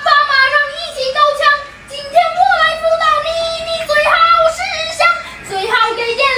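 A child singing a comic song in Mandarin, with lyrics about parents and pocket money. The singing comes in phrases, with short breaks about two seconds in and again near the end.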